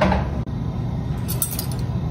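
Light clinks of a metal measuring spoon against a stainless steel saucepan over a steady low hum, which cuts out briefly about half a second in.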